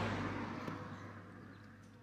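A passing vehicle's noise fading away as it moves off, with a faint steady low hum underneath.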